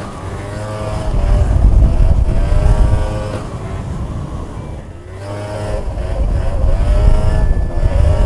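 Small scooter engine running at speed, its pitch rising and falling as the throttle is opened and eased. It climbs over the first couple of seconds, drops away to a low about five seconds in, then rises again, with wind rumbling on the microphone underneath.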